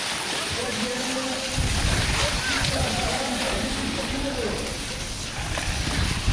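Cyclo-cross bike tyres running through loose sand as riders pass close by, under faint background voices. A low, uneven rumble comes in about a second and a half in.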